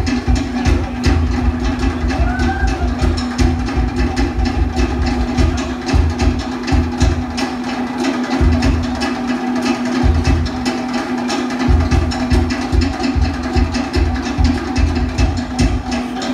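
Fast Polynesian drum music: rapid, dense strikes on wooden log drums over a pulsing deeper drum beat, with a steady held tone underneath.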